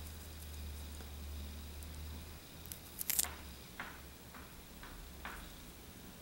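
Unripe green almond fruit being pried apart by hand: a few soft clicks and squishy cracks from the green hull, the loudest about three seconds in, over a faint low hum at first.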